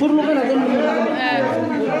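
Several people talking at once in a group, their voices overlapping in chatter.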